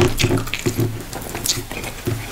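Close-miked wet chewing and mouth sounds of eating goat meat in egusi soup with fufu: irregular sticky smacks and clicks, about three a second.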